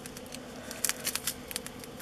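Light handling noise: a few faint, scattered clicks and taps of small craft materials being handled on a table.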